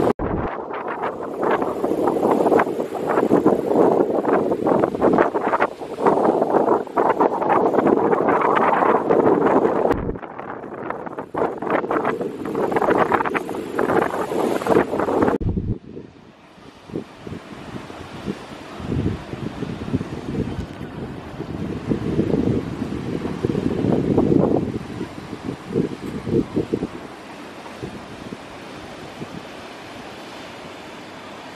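Wind buffeting the microphone, loud and gusty, for the first half. After about fifteen seconds it drops to a much quieter, steadier rush with a few softer gusts.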